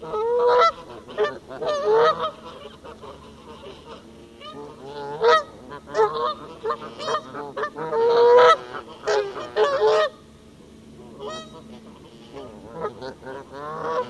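Canada geese honking repeatedly in bouts of short calls, the busiest stretch in the middle, then a lull of a couple of seconds before honking starts again near the end.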